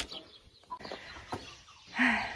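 Cornish cross meat chickens giving a few short, faint clucks.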